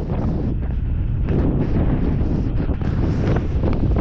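Wind buffeting the microphone: a steady, low rushing noise.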